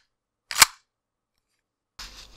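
Airsoft pistol slide being racked, a single sharp clack about half a second in, recorded close to the microphone as a gun-loading sound effect.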